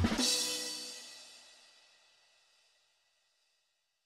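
Hip-hop beat ending on a final hit: the cymbal and held notes ring out and fade away within about a second and a half, leaving silence.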